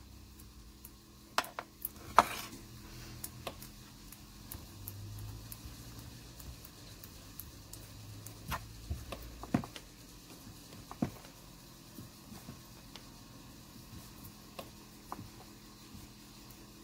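Scattered light clicks and taps of hands and a steel roller on a hard work surface as soft polymer clay is pressed and rolled by hand, over a faint steady low hum.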